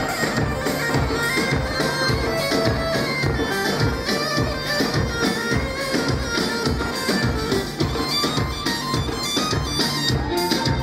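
Folk dance music: a large double-headed drum beats a steady dance rhythm under a loud reed wind instrument that plays a continuous melody.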